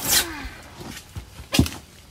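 Bunches of water celery rustling and scraping as they are handled in a box, with a short, sharp knock about a second and a half in.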